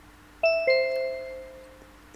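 A two-note descending chime, a ding-dong like a doorbell. The first note sounds about half a second in and the lower second note follows a quarter second later; both ring out and fade over about a second.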